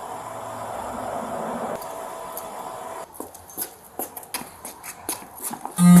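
Police dog on a leash working around a parked car: from about three seconds in, a run of short, irregular sniffs and scuffs, after a steady hum in the first half.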